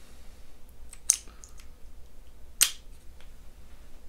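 Sharp plastic clicks as the foil head of a Kemei electric foil shaver is handled and snapped back onto the body: two loud clicks about a second and a half apart, with a few fainter ticks around them.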